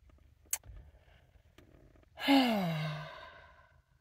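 A woman's long sigh, voiced and falling in pitch, trailing off into breath; it starts a little past two seconds in. A brief sharp click comes about half a second in.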